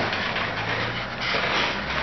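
Shuffling and clothing rustle as a person gets up from a swivel office chair and moves onto a carpeted floor, over a low steady hum.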